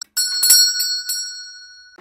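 Chime sound effect for an animated logo: a quick run of bright, high bell-like strikes in the first second that ring on and fade away.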